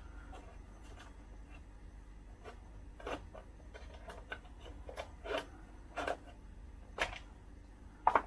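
Small clicks and knocks of a screwdriver and plastic parts as a chainsaw's top cover is worked loose and lifted off, over a low steady hum. The sharpest knocks fall about three, five, six and seven seconds in.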